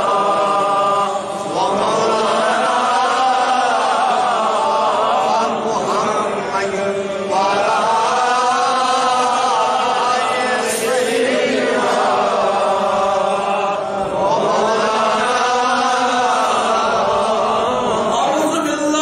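Male voice chanting an Islamic devotional recitation in long, drawn-out melodic phrases, with a short break between phrases every six seconds or so.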